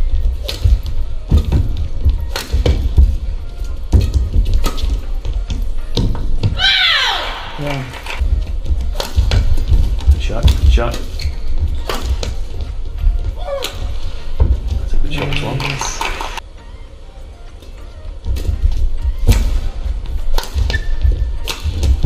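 Badminton rallies: repeated sharp racket strikes on the shuttlecock over a steady low hall rumble, with two loud sliding squeals, about seven and fifteen seconds in.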